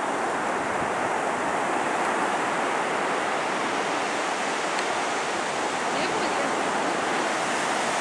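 Ocean surf breaking on a sandy beach: a steady, even wash of waves.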